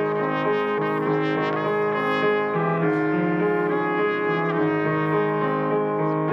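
Instrumental hymn music, steady sustained notes and chords moving every second or so.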